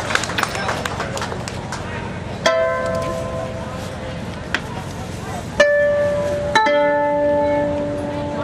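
Koto plucked slowly and sparsely: a first note or chord about a third of the way in, then two more a second apart later on, each left to ring and die away.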